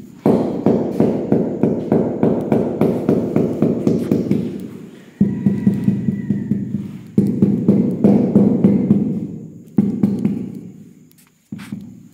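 Mallet tapping a ceramic floor tile to bed it into mortar: a fast run of taps, about four a second, for roughly four seconds, then four single, heavier blows, each ringing on and dying away over a second or two.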